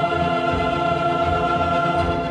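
Opera orchestra and chorus holding sustained chords over a steadily pulsing bass.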